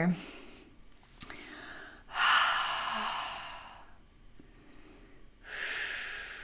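A woman breathing slowly and audibly: two long breaths about three seconds apart, the first fading out over about two seconds. There is a small mouth click about a second in.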